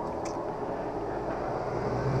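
Optical lens edger running with a steady mechanical whir, a low hum coming in near the end as the edging cycle moves on from tracing the lens to grinding it.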